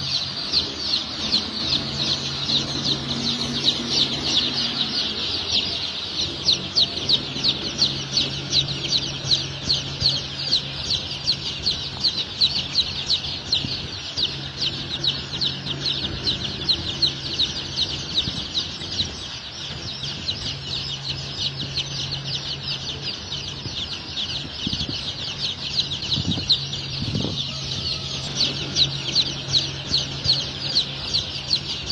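Newly hatched chicken chicks peeping rapidly and without pause, several high peeps a second, over a low steady hum.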